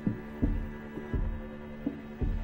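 Background score music for a tense moment: a steady pulse of low thumps, about one and a half a second, under a held synth chord.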